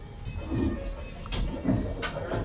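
Quiet eating sounds over a low room rumble: a lemon wedge squeezed over a bowl of bhel puri, then a few faint clicks from a spoon on the ceramic bowl as a spoonful of crunchy puffed rice is taken into the mouth.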